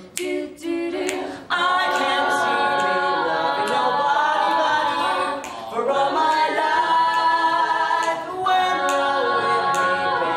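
A small mixed group of male and female voices singing a cappella in five-part harmony, with a bass line. It starts sparsely, then the full harmony comes in loudly about a second and a half in, with brief breaks near the middle and near the end.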